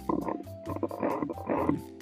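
A coal tit scrabbling through the nest-box entrance and rustling the moss-and-hair nest lining: three short bursts of rough scratching and crackling.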